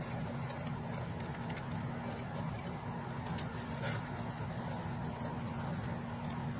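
Felt-tip permanent marker scratching across paper in short, repeated strokes while writing, over a steady low hum.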